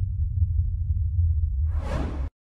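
Intro sound effect: a deep, steady rumble, with a whoosh swelling up near the end.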